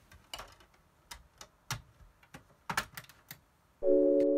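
A quick series of sharp plastic clicks and clunks as a portable CD player's lid is pressed shut and its buttons are pressed. Just before the end, music starts abruptly with held chords, much louder than the clicks.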